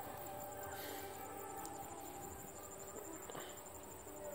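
Faint outdoor background with steady soft tones, broken by two faint clicks from handling, one a little before halfway and one near the end.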